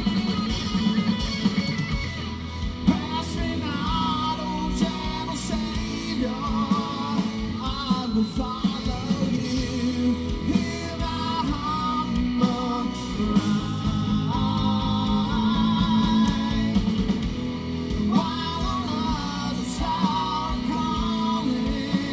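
Live rock band playing through a PA: electric guitars, bass and drum kit, with a voice singing a melody over them.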